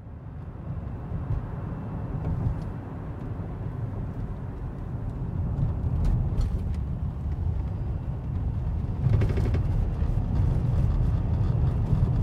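Car driving, its engine and tyre noise heard from inside the cabin as a steady low rumble that fades in at the start.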